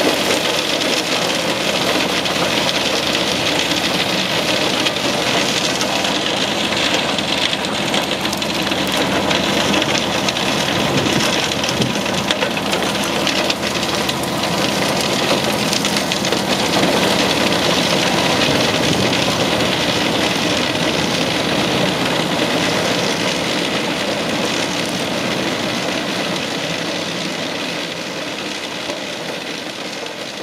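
Eschlböck Biber 84 truck-mounted wood chipper running under load, chipping brush fed in by its crane, with the MAN truck's engine working steadily behind it. The loud, even machine noise fades away over the last few seconds.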